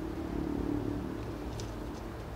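Low outdoor background rumble with the engine hum of a passing vehicle, strongest at first and fading after about a second.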